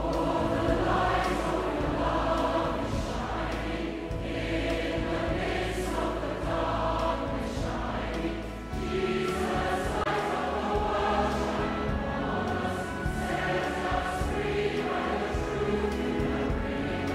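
Choral music: a choir singing slow, long-held lines.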